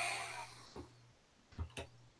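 A short breathy hiss with a low electrical hum on a voice-chat microphone, fading within about half a second, then two faint clicks about a second and a half in.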